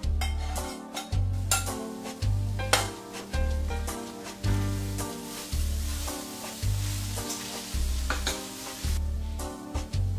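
Minced chicken and fried onions sizzling in a hot stainless steel pan as they are stirred together. The sizzle sets in about a second and a half in and fades near the end, under background music with a steady, regular bass line.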